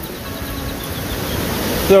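Steady rush of beach surf and wind, swelling gradually louder toward the end.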